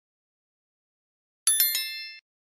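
A single bright, bell-like chime sound effect about one and a half seconds in, sounding as the notification-bell button is clicked; it rings with several high tones and fades quickly.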